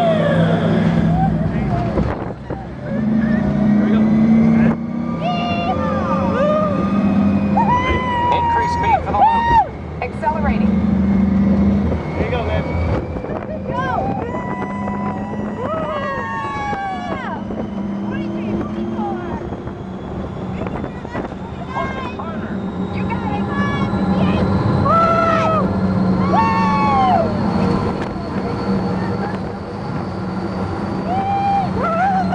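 Test Track ride vehicle running at speed on the high-speed loop: a steady low rumble with a thin whine that rises slowly over the second half as it speeds up. Riders' excited cries and whoops come and go over it.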